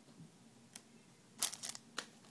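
Small plastic Lego pieces and their plastic packaging being handled: a faint click about three-quarters of a second in, then a short cluster of clicks and rustles near the end.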